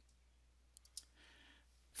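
Near silence in a pause of speech, with a few faint clicks a little before halfway and a faint soft hiss after them.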